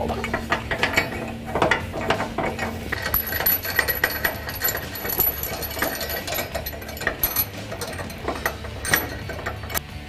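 Steel sway-bar mounting hardware (bolts, washers and a saddle bracket) clinking and rattling in an irregular series of clicks as it is fitted by hand to a truck frame.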